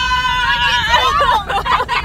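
Several young women shrieking and yelling together inside a moving car. One voice holds a long high note for about the first second before the voices break up and overlap, with the car's low road rumble underneath.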